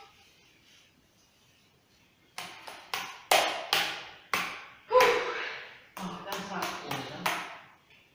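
A paintbrush slapped and dabbed against a painted wall in a run of about a dozen sharp taps, starting a couple of seconds in, mixed with a small child's short vocal sounds.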